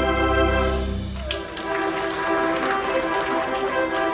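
Organ playing held chords over a strong bass line. About a second and a half in, the bass drops out, leaving higher chords with light percussive ticks.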